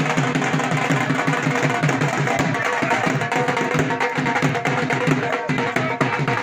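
Two dhols, double-headed barrel drums, played together in a loud, fast, steady beat.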